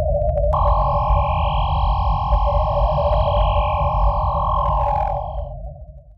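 Synthesized logo-intro sound effect: a deep, flickering rumble under a steady electronic hum, with a few faint ticks, then a brighter ringing tone layered on about half a second in. The upper tone cuts off about five and a half seconds in and the whole sound fades out at the end.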